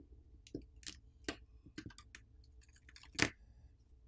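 Faint, irregular clicks and small cracks as a pry tool works a smartphone battery loose from the adhesive beneath it, with one louder crack about three seconds in.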